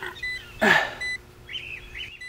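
Small birds chirping in the background, with two very short high beeps in the first second and a brief loud rustle just under a second in.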